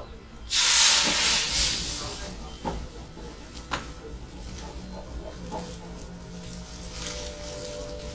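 Liqueur poured into a hot pan of orange-butter syrup, hissing loudly and flaring as it is flambéed for crêpes Suzette. The hiss starts suddenly about half a second in, fades over a couple of seconds into a softer sizzle, and a few sharp metallic clicks follow.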